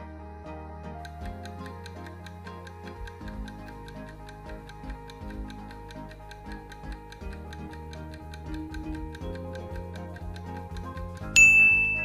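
Countdown-timer sound effect ticking steadily over background music, ending near the end in one loud bell-like ding that marks time up and the answer reveal.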